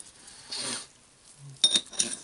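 Greased metal parts of a rotary hammer's cylinder assembly handled by gloved hands: a soft rubbing hiss, then a few sharp metal clinks with a brief ringing near the end.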